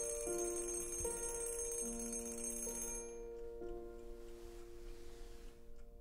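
Soft, slow piano-like score music, with the high metallic ringing of a twin-bell alarm clock over it that cuts off sharply about halfway through.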